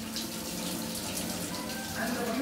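Milk poured from a brass vessel, splashing steadily over a stone deity statue during an abhishekam.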